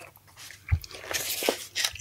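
Vinyl LP sleeves being handled: a few short paper-and-cardboard crackles and soft knocks, the clearest about three quarters of a second in and again near the end.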